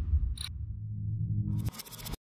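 Electronic logo sting: a deep bass swell with a brief high ping about half a second in, then a low hum that breaks into a short crackling glitch near the end.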